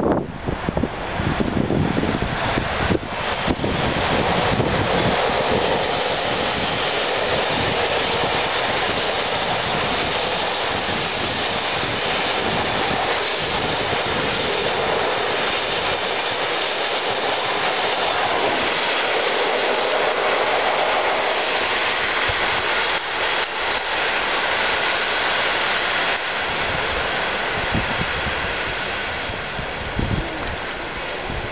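Passenger train hauled by a ChS7 electric locomotive passing close by: a loud, steady rush of wheels on rails that builds over the first few seconds and eases near the end. Wind buffets the microphone at the start.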